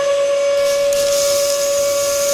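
Small electric motor of a miniature toy tipping trailer whining at one steady pitch as it raises the bed. A hiss joins from about half a second in as the sand slides out of the tipper.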